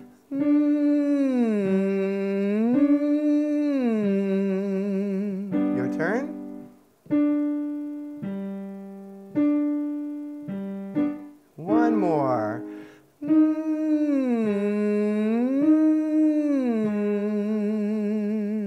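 A male singer doing a tongue-out vocal exercise, a hum-like sung tone with vibrato stepping through a five-note pattern with piano. Midway the piano plays the pattern alone in separate decaying notes, and then the sung pattern comes back.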